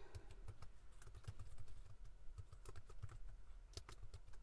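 Typing on a computer keyboard: a faint, irregular run of keystrokes.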